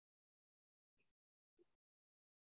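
Near silence: the sound track is all but empty, with only two barely present faint traces.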